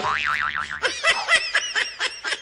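Comedy sound effect laid over the scene: a wobbling boing, then from about a second in a quick run of short squeaky chirps, about five a second.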